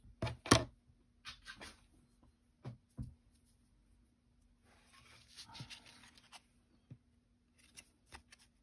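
Paper craft tags being handled and moved about on a paper towel: a few sharp taps and clicks, the loudest about half a second in, then paper rustling and sliding for a second or so near the middle.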